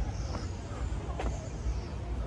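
Outdoor street ambience: a steady low rumble with a single sharp click just past a second in.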